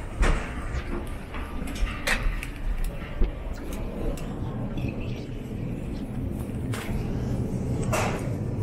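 Airport jet bridge and terminal background noise: a steady low rumble with a few short clicks and knocks, and voices in the background.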